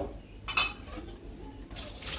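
Aluminium kettle clanking against the sink, with a small knock and then one sharp metallic clank that rings briefly about half a second in. Near the end, water starts pouring out of the kettle into the sink.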